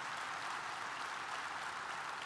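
A large audience applauding steadily, a dense even clapping.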